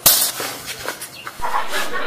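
A sharp open-hand slap across a man's face, a single loud smack at the very start, followed by a few fainter short sounds.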